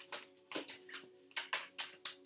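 A deck of tarot cards being shuffled by hand: a run of short, soft card flicks at uneven intervals.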